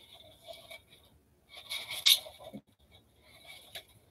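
Crafting mesh ribbon being scrunched and pressed onto a styrofoam form, rustling and scraping in three short bouts. The middle bout is the loudest.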